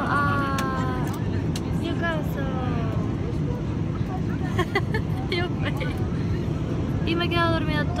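Steady drone of a passenger airliner's cabin, engine and air noise running evenly, with voices over it.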